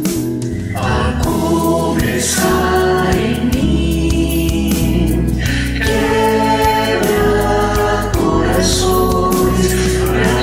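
Mixed choir of men's and women's voices singing a Christian worship song, backed by keyboard, acoustic guitar, bass guitar and drums. The voices come in fully about a second in, after a short instrumental lead-in.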